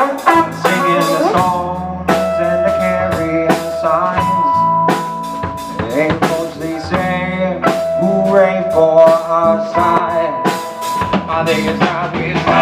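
Live blues rock band playing an instrumental passage without vocals: drum kit with snare and bass drum keeping a steady beat under bass and electric guitar, with long held lead notes that bend slightly.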